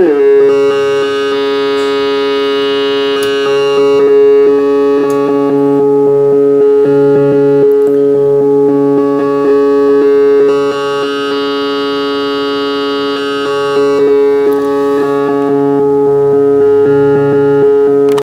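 Mungo g0 granular module playing a short file as a wavetable: a sustained synthesizer note whose timbre keeps shifting as the waves are scanned and cut into small grains. The tone brightens and darkens every few seconds, and a lower note steps in and out in a short wave sequence.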